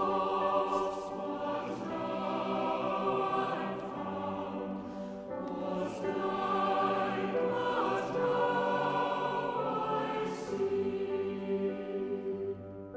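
A choir singing slow music in long held notes.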